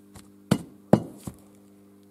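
Metal parts of a dismantled diesel fuel injector being handled: two sharp metallic knocks about half a second apart, then a fainter one.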